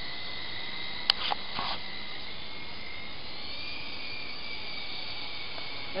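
Syma S301G radio-controlled helicopter whining steadily overhead from its electric motors and rotors, the pitch rising slightly past the middle and then holding. A single sharp click comes about a second in.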